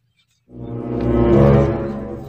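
A deep, horn-like sound effect, held at one low pitch after a brief silence, swelling and then fading away.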